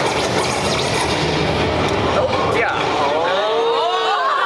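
Several voices shouting and calling at once over a loud, noisy hubbub, with long sliding calls in the second half.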